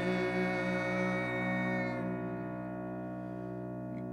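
The closing chord of a live song, held on keyboard and slowly fading out, with a slight waver in one low note.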